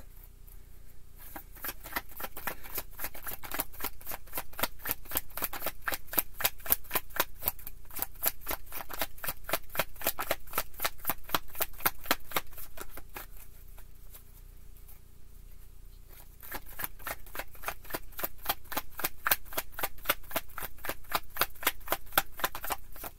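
Tarot deck being shuffled in the hands, a fast run of card snaps and flicks. The snapping pauses for a few seconds about two-thirds of the way through, then starts again.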